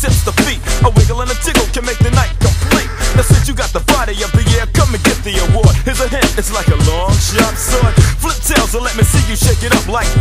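Old-school hip hop track: rapping over a drum beat with a steady bass line.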